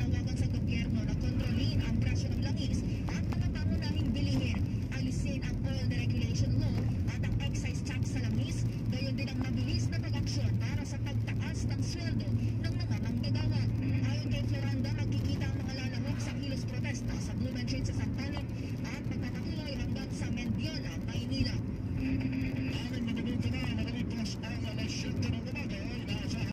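Steady engine and road drone inside a moving car's cabin, with a voice faintly over it.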